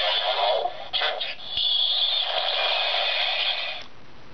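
Bandai DX Chalice Rouzer toy belt playing its transformation sound effect through its small speaker after the Change card is swiped: a burst lasting about a second, a couple of short clicks, then a longer steady effect that cuts off just before the end.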